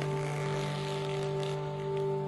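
Background music of a radio play: a steady held chord of several sustained tones, with no melody moving.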